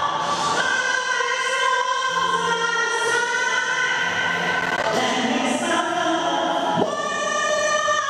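A woman singing into a microphone over musical accompaniment, holding long, sustained notes.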